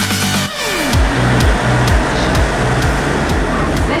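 Music ending with a falling swoop in the first second, followed by the steady rumble of an electric passenger train beside a station platform.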